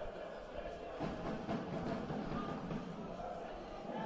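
Faint football-match ambience from the pitch: an even background hum with distant, indistinct voices.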